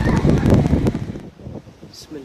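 A floodwater torrent rushing past, heard through a phone microphone with wind buffeting it. The loud noise cuts off suddenly a little over a second in, leaving a much quieter background.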